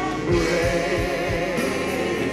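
Gospel music: a choir sings with a full band under a steady beat of about three thumps a second.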